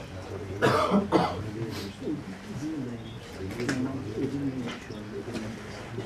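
A person coughing twice in quick succession, a short noisy burst each, about a second in, followed by quiet voices in the room.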